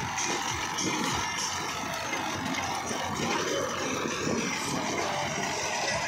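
Tractor diesel engine running under load while driving a soil-loading trolley through its PTO shaft, with the trolley's elevator scooping and lifting soil; a steady, continuous machine noise.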